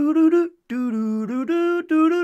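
A man vocalising a tune without words, holding several notes that step up and down in pitch with a short break about half a second in: his imitation of the opening theme music of his show.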